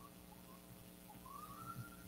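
Near silence: room tone with a faint steady hum, and a faint thin tone rising in pitch from about halfway through.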